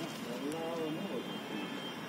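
Indistinct voice of a person speaking briefly in the first half, over a steady background rush.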